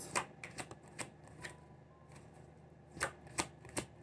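A deck of tarot cards shuffled by hand: quiet, scattered card clicks in the first second and again near the end, with a lull between.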